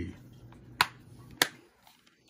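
Two sharp plastic clicks about half a second apart as a black plastic DVD case is snapped shut.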